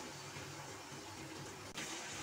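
Puris deep-frying in hot oil in a kadai, a faint steady sizzle, with a faint short click near the end.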